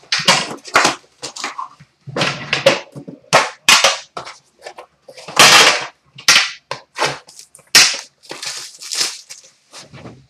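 A 2011-12 Upper Deck The Cup hockey card tin being cut open with a pocket knife and handled: a quick, irregular run of sharp clicks, taps and scrapes of metal and packaging close up.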